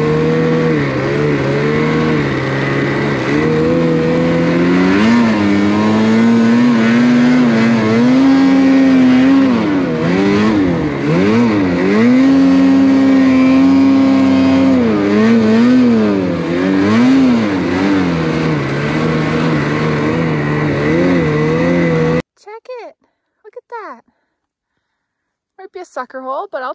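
Lynx Boondocker snowmobile's two-stroke engine running hard under throttle, its pitch rising and falling as the rider works the throttle, over track and wind noise. It cuts off abruptly near the end.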